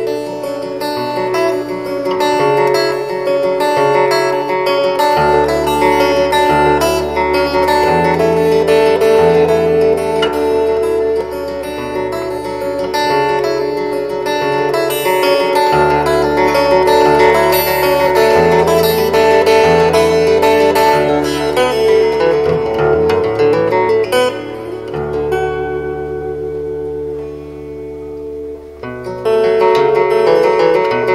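Solo steel-string acoustic guitar played fingerstyle: ringing upper notes held over a picked bass line that steps between notes. The bass thins out and the playing quietens just before the end, then the full texture comes back.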